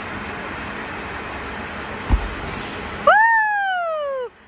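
A single dull thud about halfway through, as the gymnast lands her dismount on the mat. Then, near the end, a loud, long, high-pitched "woo" cheer that rises briefly and glides down in pitch.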